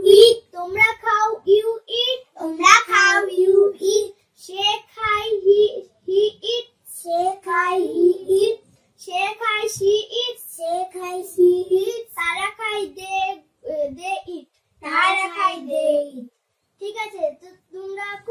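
Young girls' voices chanting and reciting in a sing-song, in short phrases of about a second with brief pauses between them.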